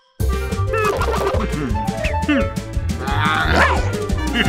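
Cartoon background music with a steady bass line starting abruptly just after the start, overlaid with a cartoon character's wordless, gliding grumbling vocalizations.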